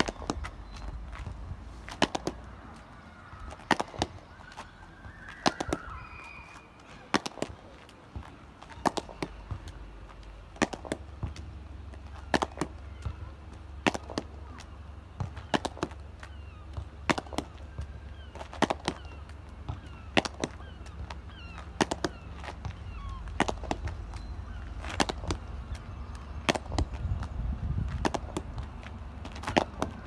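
A hurley repeatedly striking a sliotar along the ground against a concrete wall: 19 strikes, each a sharp crack, often closely followed by a second knock.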